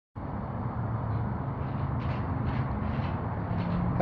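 Diesel engine of a 2011 International DuraStar truck idling: a steady low hum.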